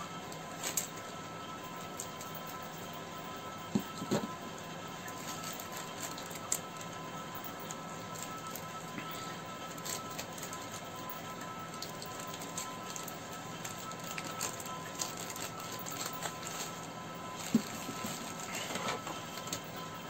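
Faint, steady room hiss with a low steady hum, broken by a few soft clicks and rustles from a cardboard parcel being handled and opened with scissors.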